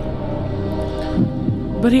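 A steady low hum with sustained low tones fills a pause in the talk, with a brief low sound a little over a second in.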